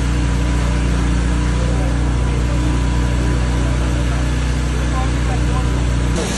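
Engine running steadily at a constant speed, with a deep drone and an even hiss over it. This is typical of a fire tender's pump engine driving a hose line at a fire.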